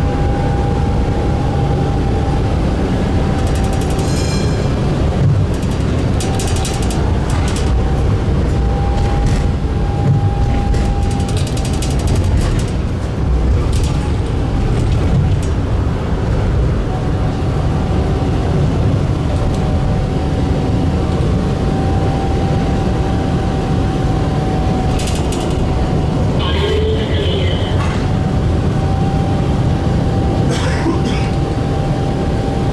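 Tram running along street track, heard from on board: a steady rumble of wheels and running gear with a constant high whine, broken by several bursts of rapid clicking and rattling.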